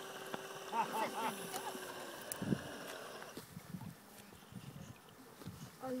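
Faint, steady whine of the remote-control sea-monster model boat's motor as it swims, stopping about three seconds in. Faint voices are heard around it.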